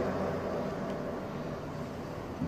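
A pause between spoken phrases, holding only a steady, faint background hum and hiss: the room tone of the recording.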